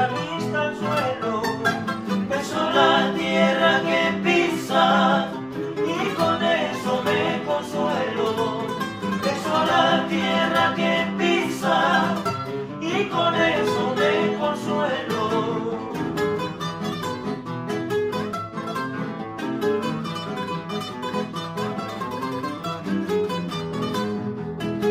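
Three acoustic guitars playing together through an instrumental passage of an old Ecuadorian folk song, plucked notes over chords without a break.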